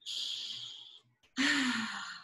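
A woman takes a long, breathy breath, then about a second and a half in lets out an audible sigh of relief that falls in pitch as it fades.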